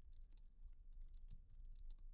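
Faint computer keyboard typing: a quick, even run of keystrokes, several a second, as a folder name is typed in.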